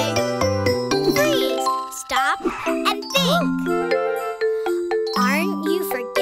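Children's song backing music with tinkling bell-like notes, broken by brief high sliding sounds about one to three seconds in and again near the end.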